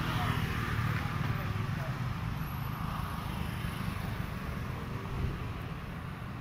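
A car engine idling steadily with a low, even rumble, with faint voices in the background.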